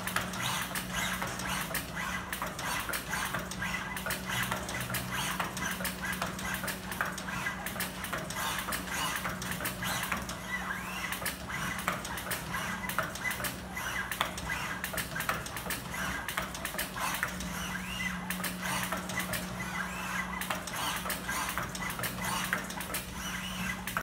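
Dense, irregular clicking and clattering over a steady low hum, from a small five-bar linkage robot mechanism moving continuously.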